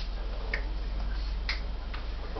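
Two light clicks about a second apart over a steady low hum.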